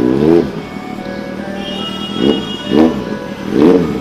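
Kawasaki Z800's inline-four engine revved in four quick throttle blips, each rising and falling in pitch, over background music.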